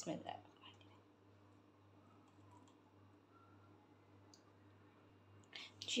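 Near silence with a brief cluster of small clicks at the very start and a few faint ticks afterwards; a woman begins speaking near the end.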